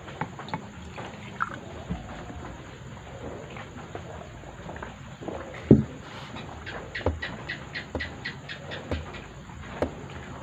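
Quiet room with small handling sounds: scattered faint clicks, a single dull thump about halfway, then a run of quick light ticks, about four a second, for some three seconds, over a faint steady high hiss.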